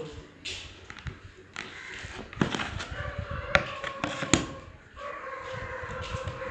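Bread dough being handled on a wooden worktable: rustling with a few sharp knocks and thuds as it is turned out and pressed flat by hand. A faint steady tone sets in about halfway.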